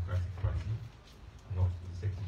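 A man speaking into a handheld microphone, his voice very boomy and heavy in the low end, with a short pause about a second in.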